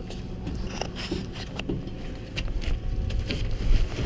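Rustling and scattered light knocks and clicks as a person handles the cab door and climbs up into a tractor cab, over a steady low rumble.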